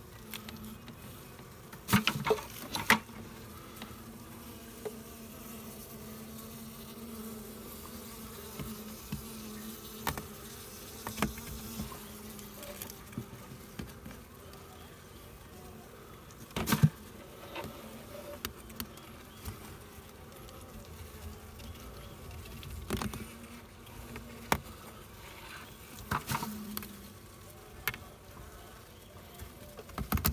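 Honey bees buzzing in a steady hum, with sharp knocks and taps every few seconds.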